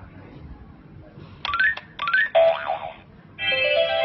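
Winfun crawling crocodile toy's electronic sound effects from its button memory game: a few quick rising boing-like chirps about one and a half seconds in, a short buzzy tone, then a bright electronic tune starting near the end.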